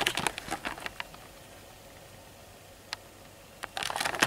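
Quiet room hiss with scattered light clicks and taps: several in the first second, a single one near three seconds, and more gathering near the end.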